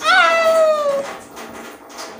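A baby's single drawn-out whining cry, about a second long, sliding slightly down in pitch, then fading to quiet rubbing sounds.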